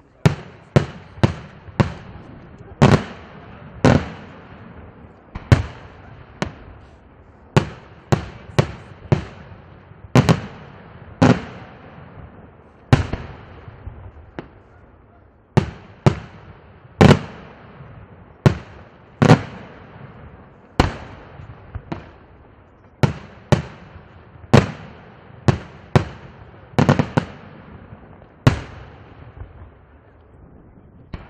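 Daytime aerial firework shells bursting in a rapid, irregular series of sharp bangs, about one a second, each followed by a short echo.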